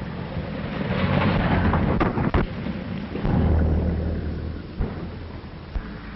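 A rumbling din that swells and fades, broken by sharp cracks about two seconds in, again just after, and twice near the end, on an early sound-film soundtrack.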